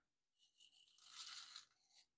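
Faint gritty scraping of small seashells being stirred through resin in a plastic mixing cup with a wooden stir stick. It grows loudest past the middle.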